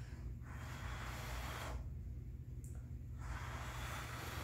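A person blowing hard by mouth on wet acrylic paint to push it across the canvas: two long breathy blows of about a second each, with a short pause between, over a steady low hum.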